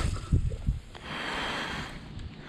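A cast with a spinning rod and reel rigged with a soft-plastic lizard: a few low bumps and rustles as the casting arm swings past, then a steady hiss for about a second as the line runs out.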